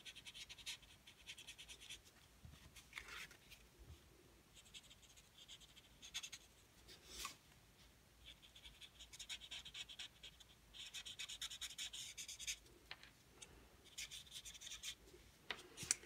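Faint scratching of an alcohol-marker tip rubbed across cardstock in short stretches of strokes with pauses between. It is a Stampin' Blends colour-lifter blending out colour around a coloured image.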